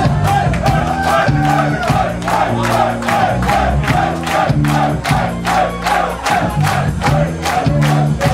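Rock band playing live in a club, heard from within the crowd: a fast steady drumbeat with cymbals, held bass notes and a wavering high line above them, with crowd voices mixed in.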